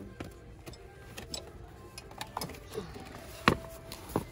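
A large Strathmore watercolor paper pad being handled on a metal store shelf: light scuffs and clicks, then one sharp knock about three and a half seconds in as the pad is pulled out. Faint background music plays underneath.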